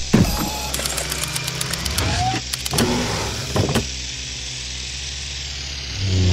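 A whirring drone-motor sound effect for an animated flying drone. Clicks and a few mechanical knocks come over the first four seconds, then a steady whir.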